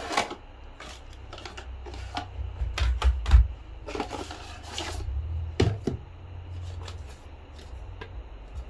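Cardboard product box being handled and opened: scattered clicks, taps and scrapes of the box flap and packaging, with low bumps of handling and a louder bump about three seconds in.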